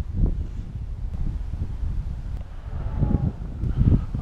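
Wind buffeting the microphone, an uneven low rumble, with a faint voice about three seconds in.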